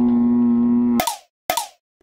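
A man's long, held cry of dismay, sliding up and then holding one steady note, as a hooked black sea bream throws the lure and comes off. It breaks off about a second in, followed by two short sharp swishes about half a second apart.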